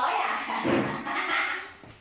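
Harsh, noisy animal calls that fade out near the end.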